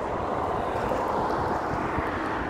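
Steady rushing noise of a moving vehicle, with wind on the microphone, swelling slightly mid-way.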